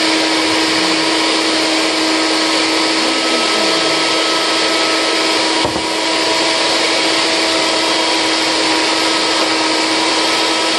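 NutriBullet blender motor running steadily at full speed with a high whine, churning a thick load of frozen bananas and frozen blueberries in almond milk that is too frozen to blend easily. The sound dips briefly a little past halfway, then carries on.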